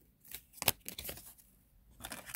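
Tarot cards being handled as a card is drawn from the deck: a few short papery clicks and flicks, with one sharper snap under a second in.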